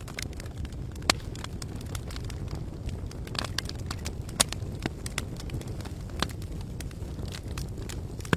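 Fire sound effect: a steady low rumble with irregular sharp crackles and pops.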